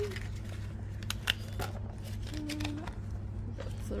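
Light handling sounds, a few scattered soft clicks and rustles, as a red rubber volcano mould is flexed and its rubber band pulled off, over a steady low hum.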